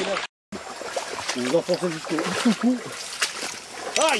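Feet wading and splashing through shallow creek water, with scattered splashes. There is a brief cut to silence just after the start, and voices talk in the background.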